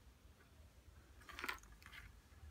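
Faint handling sounds of small craft embellishments being picked through in a box: soft rustles and a short cluster of light clicks about one and a half seconds in.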